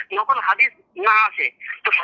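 Speech only: a voice talking over a phone call, heard through a mobile phone's speaker with a thin, phone-line sound.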